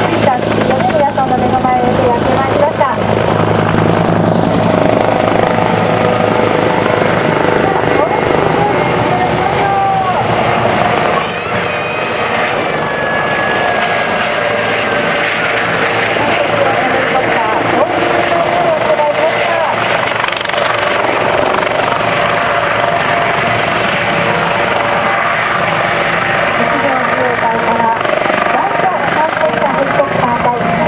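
Military helicopters' rotors and turboshaft engines running loudly at close range: a Bell AH-1S Cobra flying low, then, after a change about eleven seconds in, a Kawasaki OH-1 hovering. Voices are heard over the rotor noise.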